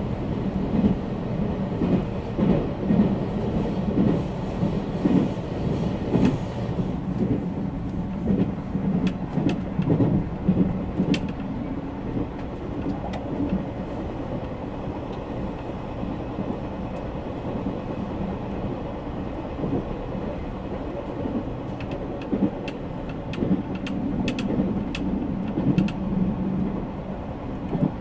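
JR Central Series 383 tilting electric train running at speed, heard from inside the front car: a steady rumble of wheels on rail with rhythmic thumps during the first several seconds. Sharp track clicks come in two clusters, one in the middle and one near the end.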